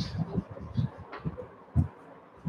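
Chalk writing on a blackboard: a series of short dull knocks of the chalk against the board with faint scratches, and a louder thump near the end.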